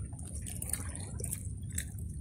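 Small waves lapping and trickling among the stones of a rock breakwater, over a steady low rumble, with a few faint clicks.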